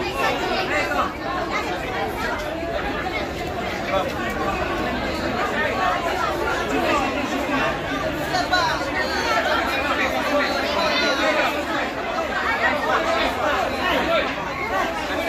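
Crowd chatter: many people talking over one another close by, steady throughout, with no single voice standing out.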